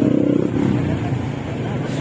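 Motor scooter engine running as it passes close by, with voices in the background.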